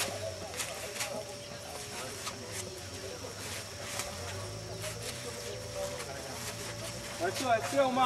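Faint talk of people in the background over a steady thin hum, with a nearer voice starting near the end.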